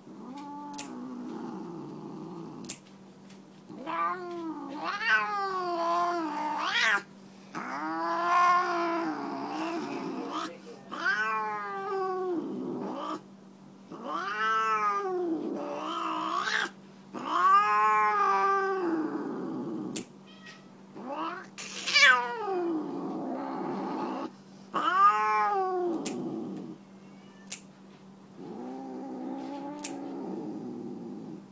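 Siamese tabby cat yowling in protest while her nails are clipped: a dozen or so long, drawn-out calls that rise and fall in pitch, with short pauses between them. A few sharp clicks fall between the calls.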